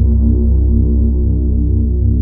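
Ambient electronic music: a deep synthesizer drone of stacked low tones with an even, throbbing pulse, its upper tones slowly thinning out.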